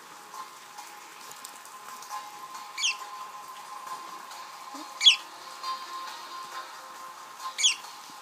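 Budgerigar giving three short, sharp high chirps, a couple of seconds apart.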